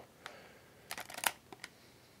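Quiet room tone with a few faint, short clicks about a second in.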